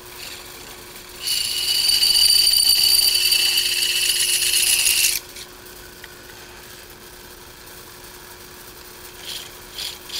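Drill press motor running with a steady hum while its twist bit enlarges a pre-drilled pilot hole in a sheet-metal enclosure. About a second in, the cut sets up a loud, high-pitched whine that holds for about four seconds and then stops suddenly, leaving the motor running.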